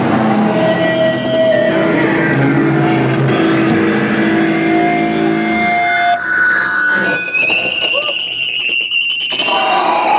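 Rock band playing loud electric guitar music with long held tones. About six seconds in the full band drops away, leaving thinner sustained high guitar tones.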